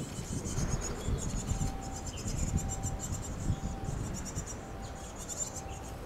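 High, rapid chirring of nestlings begging inside a wooden nest box, coming in pulsing runs. A short mid-pitched call repeats about once a second, over a low rumble.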